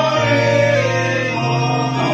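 A congregation singing a hymn together over organ accompaniment, with held low organ notes that shift pitch every second or so beneath the voices.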